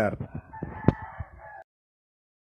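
Faint, drawn-out animal call in the background, with a sharp click about a second in; the sound cuts off abruptly past the middle, leaving dead silence.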